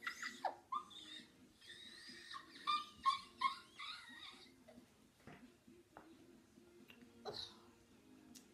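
A boy's voice making a run of high-pitched squeals and yelps over the first four seconds or so, the first one sliding sharply down in pitch, with a few shorter ones later and one more near the end. Faint steady background music plays underneath.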